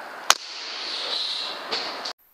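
A single sharp crack of a PCP air rifle firing a pellet about a third of a second in, followed by a softer knock near the end, over a steady hiss.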